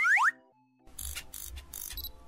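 A short rising cartoon sound effect, then about a second in a camera shutter sound effect: a noisy snap-and-whir with a few sharp clicks, lasting about a second and a half. Soft children's background music runs underneath.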